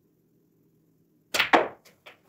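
A snooker shot being played: two sharp clacks about a fifth of a second apart, which fit a cue striking the cue ball and balls colliding, followed by a few lighter clicks of balls knocking together.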